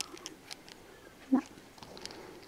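Small clicks and taps of a plastic baby dummy being handled and turned over in the fingers. A brief, short pitched sound comes about two-thirds of the way through.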